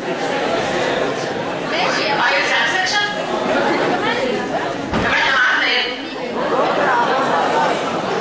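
Several people talking at once in a large hall: a chatter of overlapping voices.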